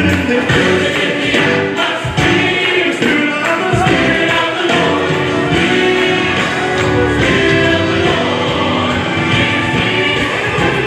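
Choir singing a gospel song with instrumental accompaniment, carrying on steadily.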